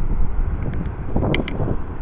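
Wind buffeting the microphone, a steady low rumble that swells briefly about halfway through.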